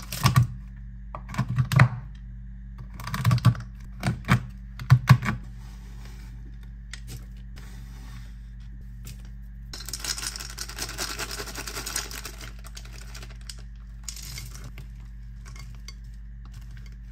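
Squares of peppermint bark chocolate being snapped and dropped onto a wooden cutting board: a series of sharp clicks and knocks in the first five seconds. About ten seconds in there are a couple of seconds of softer rustling.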